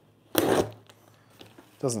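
A short ripping noise, about a third of a second long, as a cardboard shipping box is torn open.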